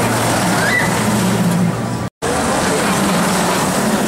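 Intamin accelerator coaster train running along its steel track, a steady rushing rumble of the wheels on the rails. The sound cuts out briefly about halfway through, then carries on.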